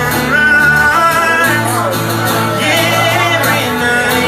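A man singing to his own strummed acoustic guitar, a live solo song with steady chords under the vocal line.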